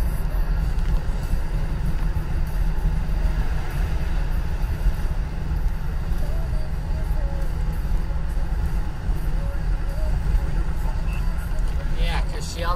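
Steady low rumble of road and engine noise inside a car cruising at highway speed.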